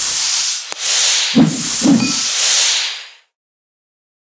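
Whooshing, hissing sound effects for an animated logo, with a sharp click under a second in and two short low thuds at about one and a half and two seconds. The sound ends after about three seconds.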